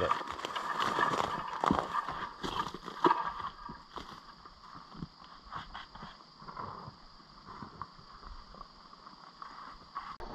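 Footsteps crunching and scuffing on loose sandstone rubble, dry leaves and twigs as someone climbs a rocky slope, with irregular knocks of shifting stones, loudest in the first few seconds and fading as he moves away. A steady high chirring of insects runs underneath.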